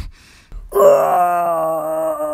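A person's long, drawn-out wail starts under a second in, loud and held at a fairly steady pitch.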